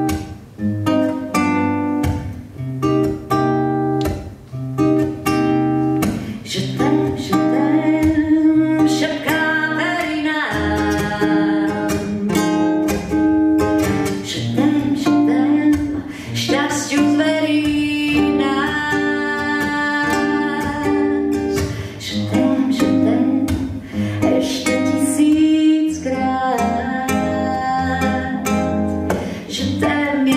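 A woman singing a ballad live with acoustic guitar accompaniment, holding long notes with vibrato.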